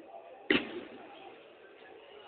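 A single hard hit of a futsal ball about half a second in, a sharp thud that rings on in a large, echoing sports hall.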